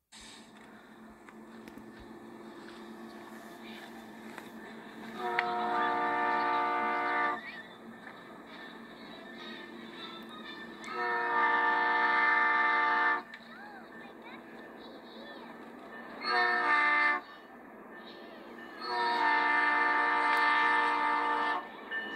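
Diesel freight locomotive's multi-chime air horn sounding four blasts, long, long, short, long: the standard signal for approaching a grade crossing. The last blast is the longest. Heard as playback from a laptop video, with a faint steady hum between the blasts.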